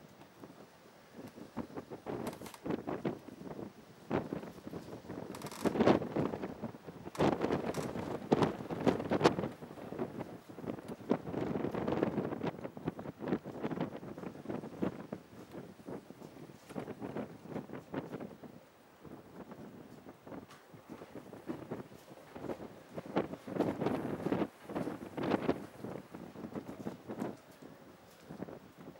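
Wind buffeting the microphone in uneven gusts with crackling, loudest a few seconds in and again near the end.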